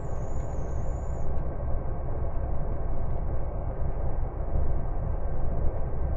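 Steady running rumble of a diesel train heard from inside the passenger car. A thin high tone cuts off about a second in.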